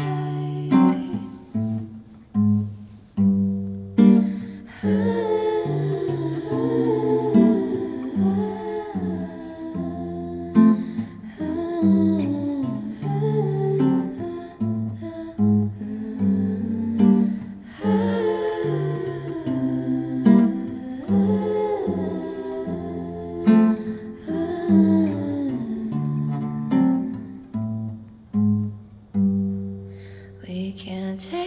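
Acoustic guitar playing a gentle accompaniment, with a wordless hummed vocal melody over it.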